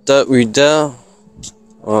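A person speaking in a Central Asian Turkic language for about a second, then a short pause carrying a faint steady low hum, with speech resuming near the end.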